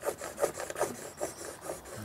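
Handsaw scraping back and forth across a wooden board in quick strokes, about two or three a second, without biting in: the blade's blunt back edge rather than its teeth is on the wood.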